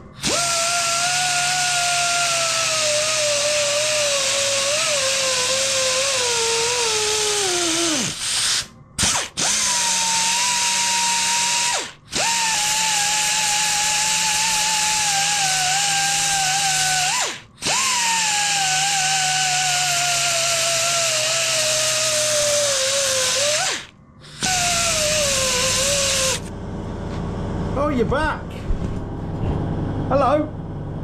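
Powered belt file grinding the aluminium crankcase of an engine. Its motor whine sags in pitch during each pass as it is leant into the metal. It stops and restarts four times and falls silent near the end.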